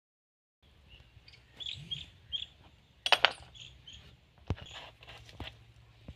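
Small birds chirping in short repeated calls, with a loud quick clatter of hard handling noises about three seconds in and a single sharp click a moment later, from hands working at a plastic backpack sprayer with its engine off.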